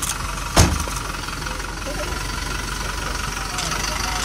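A Humvee-style truck's engine running steadily with a low hum as the truck pulls away. About half a second in there is a single sharp thump, the loudest sound.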